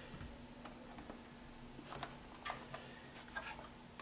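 Faint, scattered light clicks and ticks from hands handling and swinging out an Ergotron LX aluminum monitor arm, over a faint steady hum.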